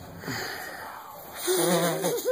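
A young girl's breathy, wheezy gasp, then about a second and a half in a short, louder held vocal sound.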